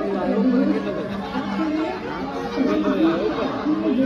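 Crowd of many voices talking and calling out at once, over a steady low hum.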